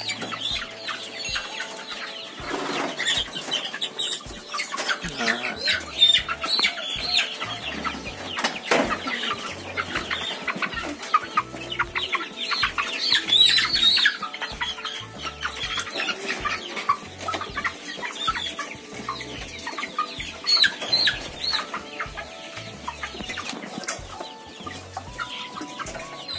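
Many chickens clucking and squawking in short, irregular calls as they are caught out of a cage and handled for leg-tying.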